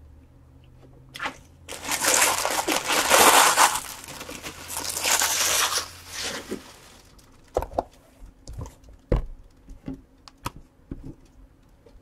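Plastic wrapping on a trading-card box being torn and crumpled for about five seconds, loud and crackly, followed by a few light knocks and taps of cardboard on a table.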